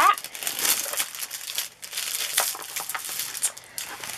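Clear plastic film on a rolled diamond-painting canvas crinkling and rustling in irregular bursts as the canvas is unrolled and smoothed flat by hand.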